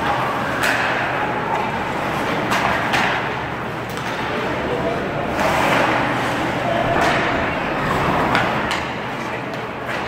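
Ice hockey game heard from the stands of a small arena: a steady hum of spectators talking, broken by several sharp clacks and thuds of sticks, puck and players hitting the boards.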